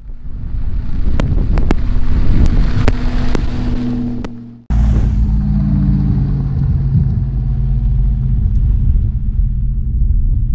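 A full-size SUV's engine running as it drives up a gravel road, with sharp clicks of stones under the tyres. The sound cuts off abruptly just before halfway through and is followed by a steady low rumble of the stopped SUV's engine idling.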